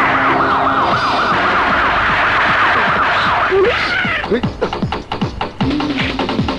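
A siren wailing in a fast up-and-down yelp, about four sweeps a second, over action film music. About three and a half seconds in, the wail gives way to rapid drum hits.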